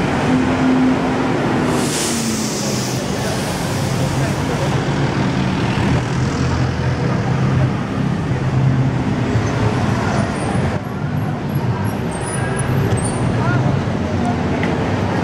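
Busy city street traffic: car engines running and passing steadily, with people talking in the background.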